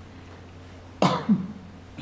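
A man clearing his throat in two short, sharp bursts about a second in, over a steady low hum.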